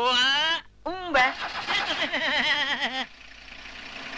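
Voices talking, several overlapping, then about three seconds in a vintage open-top car's engine starting and running.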